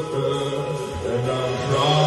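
Post-punk band playing live: held low notes that step down and back up, under a chanted vocal.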